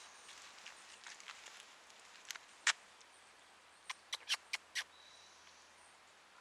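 Quiet outdoor background broken by a few sharp clicks: one or two about two and a half seconds in, then a quick run of about five between four and five seconds.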